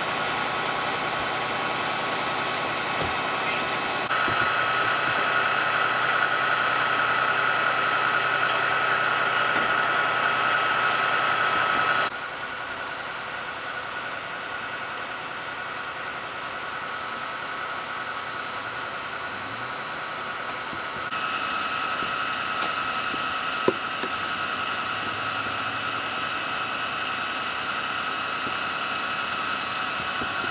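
Steady drone of idling emergency vehicles, a fire engine among them, with a high steady whine running through it. The level and tone jump abruptly a few times.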